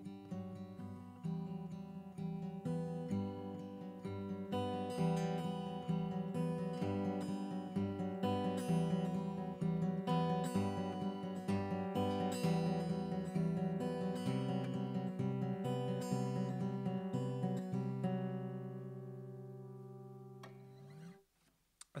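Solo acoustic guitar playing the song's instrumental ending in picked and strummed chords. A last chord rings and fades from about 18 seconds in and is damped just before the end.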